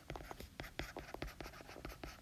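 Faint sound of a stylus handwriting words on a tablet screen: a quick, irregular run of small taps and scratches.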